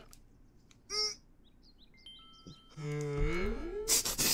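Soundtrack of an edited cartoon video: a short pitched blip about a second in, faint chirps and thin held tones, then a low drawn-out voice-like tone that slides down and back up. It is cut off by a sudden loud blast at the very end.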